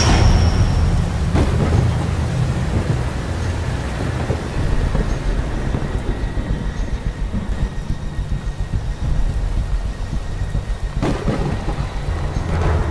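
Thunderstorm sound effect: an uneven low rumble under a steady hiss like rain. A louder sound comes in about eleven seconds in.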